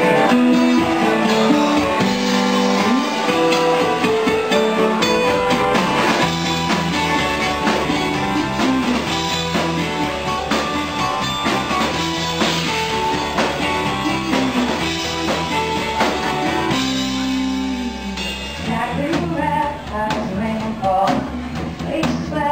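Live rock band playing a song: electric guitar and bass guitar over drums, with some singing.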